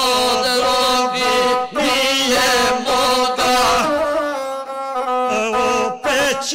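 Gusle, the bowed one-stringed fiddle of Serbian and Montenegrin epic song, playing a steady, nasal line, with male epic singing in the chanting style over it.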